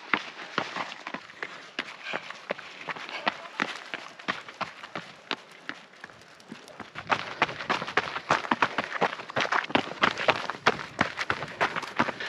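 Running footsteps on a rocky mountain trail: a quick series of sharp crunching steps on stone and grit, growing denser and louder about seven seconds in.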